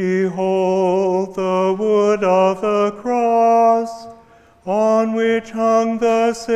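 A priest's solo unaccompanied chant: one male voice singing long, steady held notes in short phrases, pausing briefly about four seconds in before going on.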